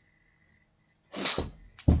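A man's short, sharp, breathy vocal burst about a second in, after near silence.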